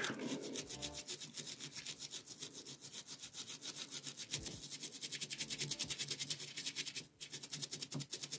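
A synthetic brush scrubbing softened paint off a miniature that has soaked in paint stripper. It goes in quick, even back-and-forth strokes, several a second, with a brief pause near the end.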